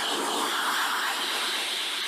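A steady, airy hiss of noise, the whoosh of a radio station jingle's transition sound effect.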